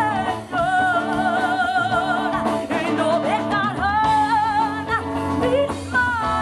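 A woman sings lead with a live band of electric bass and drums, through a microphone, holding two long wavering notes.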